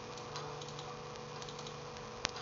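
Low background noise: a steady hiss and electrical hum from the recording setup, with a faint steady tone and a few faint clicks.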